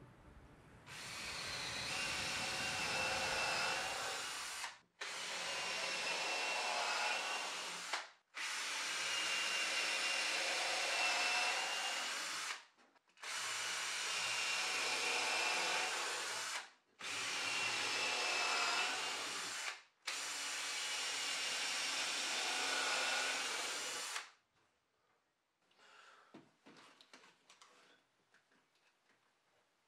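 Cordless drill running in six bursts of about three to four seconds each, with short pauses between them, working into timber joists. After the last burst there are only a few faint taps.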